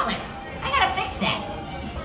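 Children's voices and chatter over background music.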